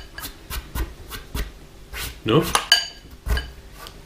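Metal fork clinking and scraping against a glass bowl of spaghetti: a string of light clicks, one about two and a half seconds in ringing briefly like glass.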